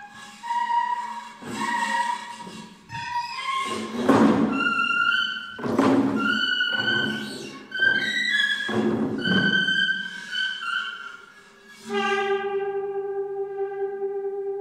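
Experimental duet for saxophone neck with a tube and prepared guitar: a string of short pitched notes jumping between pitches, broken by loud noisy blasts about four, six and nine seconds in. From about twelve seconds a single steady tone is held.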